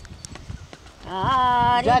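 Gondi folk song: after a brief pause with a few light percussive taps, a voice comes in singing about a second in, holding a long note.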